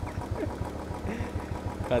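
Royal Enfield Classic 350's single-cylinder engine idling with a steady low beat while the bike sits nearly at a standstill.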